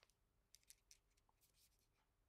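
Near silence, with a few faint crinkles and ticks of thin card as a paper finger puppet is handled on the fingers.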